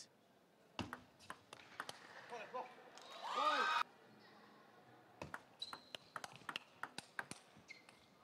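Table tennis ball bouncing: scattered sharp clicks of the ball on the table and paddles, coming thick and fast in the second half. A short loud voice, a shout or call, comes about three seconds in.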